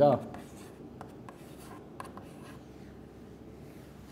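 Chalk drawing on a blackboard: soft scraping with a few light, sharp taps about one and two seconds in, as small circles are drawn.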